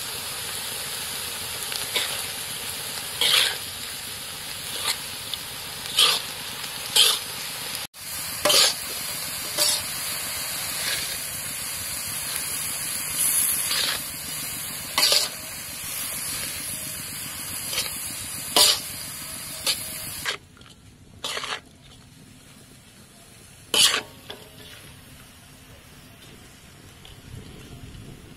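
Crickets frying with a steady sizzle in a metal wok, as a metal spatula scrapes and clinks against the pan about once a second while they are stirred. The sizzle drops away about twenty seconds in, leaving a few last scrapes.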